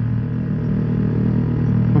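Yamaha R15's single-cylinder four-stroke engine running steadily as the bike rides along in traffic, a low even drone.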